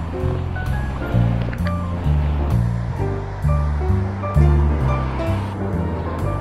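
Background music: a bass line stepping from note to note about twice a second, with short higher notes above it and a steady beat.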